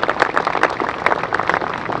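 Applause: a crowd clapping, many quick, irregular hand claps.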